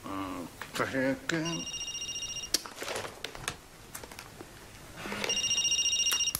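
Mobile phone ringing: two electronic, rapidly pulsing rings, each about a second long, the first about a second and a half in and the second near the end.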